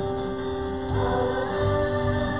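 A live Christian worship song: women singing over band accompaniment, with a steady held chord under the voices and a low pulsing beat.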